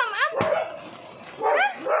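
Small pet dog giving short, high-pitched yips, eager for food at feeding time, with a sharp click in between.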